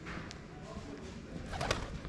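Feral pigeons in a stone alley, over a steady low background, with one short louder sound about one and a half seconds in.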